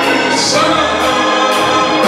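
Gospel music: many voices singing together over instrumental backing, with a steady cymbal beat about two and a half hits a second.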